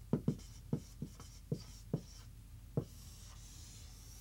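Dry-erase marker writing on a whiteboard: about seven short, sharp pen strokes in the first three seconds, then a fainter steady rubbing as a line is drawn near the end.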